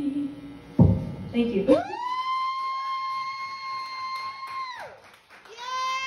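The last sung note of an a cappella song fades, then a thump about a second in, followed by two long high-pitched vocal squeals, each sliding up into a held note and falling away at its end.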